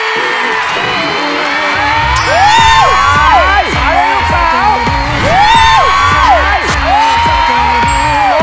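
Upbeat dance music played for a stage entrance, a heavy bass beat coming in about two seconds in, with sliding swoops rising and falling over it.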